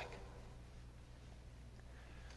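Near silence: faint room tone with a low steady hum, as the echo of a man's voice dies away at the start.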